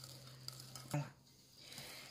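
Faint stirring of thick meringue in a glass bowl, folded slowly by hand to work in powdered milk, with one brief louder sound about a second in.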